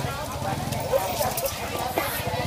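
A cleaver knocking on a chopping board as fish is cut up, a few sharp knocks about a second in, over market chatter and a low rumble.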